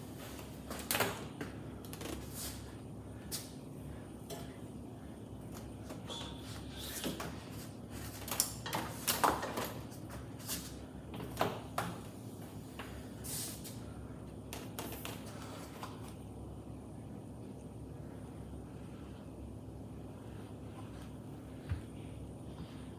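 Scattered light clicks and knocks from handling and movement, clustered in the first two-thirds, over a steady low hum.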